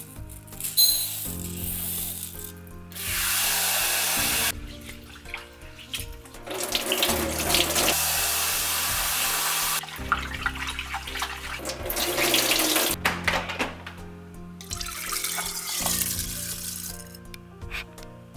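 Kitchen tap water running into a bowl at a sink while raw rice is rinsed by hand, in several spells of a few seconds each, over soft background music.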